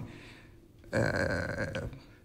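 A speaker's drawn-out hesitation "uhh", held at a flat pitch for about a second after a short pause, partway through a sentence.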